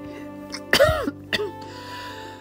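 A woman coughs, with a smaller second sound about half a second later, over soft background music.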